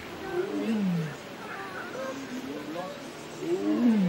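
Tiger calling twice, each a short low roar that falls in pitch, the second near the end.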